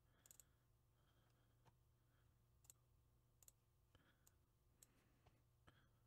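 Near silence with about ten faint, irregularly spaced computer mouse clicks, over a steady low hum.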